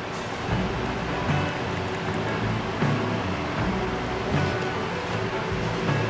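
Soft background music, steady and without a voice.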